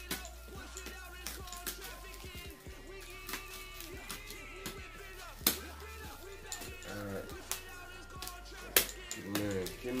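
Background music with sustained notes and shifting bass, over which come light handling noises and a few sharp clicks; the loudest are about five and a half seconds in and just before the end.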